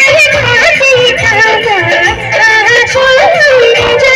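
Live amplified band music: a woman sings an ornamented, wavering melody into a microphone over keyboard, electric guitar and a steady beat.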